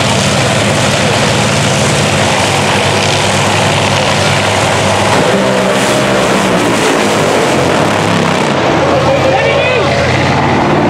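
Top Fuel dragster's supercharged nitromethane V8 idling loudly and steadily at the start line while staging.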